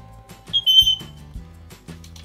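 A male eclectus parrot gives one short, shrill, whistle-like call, about half a second long, starting about half a second in.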